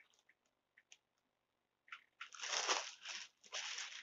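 Crinkling handling noise as cotton yarn cakes are picked up and moved about, in two short noisy bursts in the second half after about two seconds of near quiet broken only by a few faint clicks.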